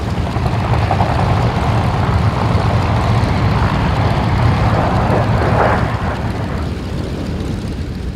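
Several Yakovlev Yak-52s' nine-cylinder M-14P radial engines running together, a steady propeller drone that swells slightly in the middle and eases near the end.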